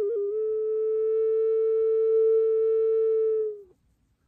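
Six-hole ceramic ocarina tuned in E, mixolydian mode: a few quick notes, then one long steady held note that lasts about three seconds and stops shortly before the end.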